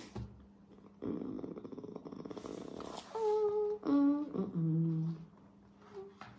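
A woman's voice: a long, rough, rattling exhale, then humming a few notes that step downward and end low.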